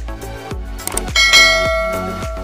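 Background music with a steady beat, and a bright bell chime struck a little over a second in that rings on: the notification-bell sound effect of a subscribe-button animation.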